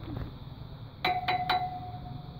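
A chime about a second in: three quick sharp strikes and one steady ringing tone that carries on for over a second.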